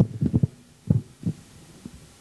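Dull low thumps of a podium microphone being handled and adjusted: a quick cluster of knocks at first, then two more about half a second apart.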